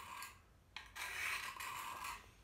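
Steel knife blade drawn across the coarse, oil-soaked stone of a Smith's tri-hone sharpening system, a rasping scrape. One stroke trails off at the start, and after a short pause a second stroke of a bit over a second begins just before a second in.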